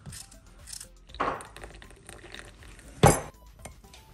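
Crockery and a teaspoon clinking in a kitchen: a few light clinks, with one sharp clink about three seconds in.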